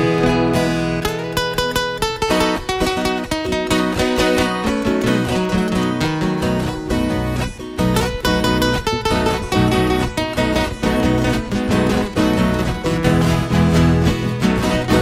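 Brazilian viola caipira and acoustic guitar playing a fast picked and strummed instrumental introduction to a moda caipira, with a quick, even run of plucked notes and no voice.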